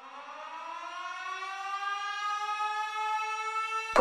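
Siren-like wind-up in the dance track: one pitched tone with many overtones, rising slowly in pitch and growing steadily louder. A pulsing beat cuts in sharply at the very end.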